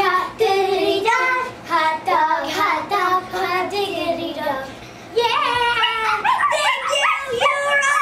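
Young girls singing a chant together in high voices, with a short break a little before halfway through before they start up again.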